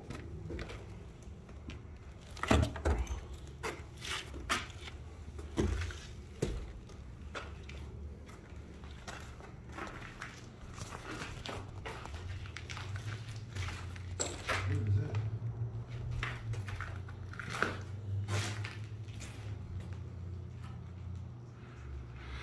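Footsteps and scuffs on a wooden and debris-strewn floor, heard as irregular knocks and clicks over a low rumble of phone-microphone handling noise.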